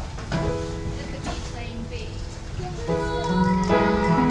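A children's ensemble of acoustic guitars with keyboard begins a piece. A single chord rings out about a third of a second in and is held, then about three seconds in the music starts properly, with bass notes underneath and the level rising.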